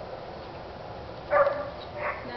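A small dog barks once, short and loud, about a second and a half in, with the start of another bark right at the end.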